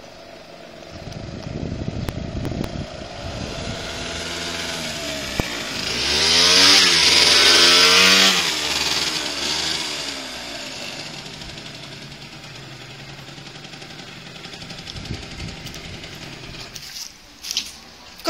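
Small motor scooter engine approaching and growing louder, loudest about six to eight seconds in as it passes close with its pitch rising and falling, then running more quietly and steadily as it slows and pulls up.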